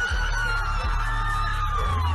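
Loud live rap concert music with heavy bass, recorded from among the crowd, with the crowd screaming over it.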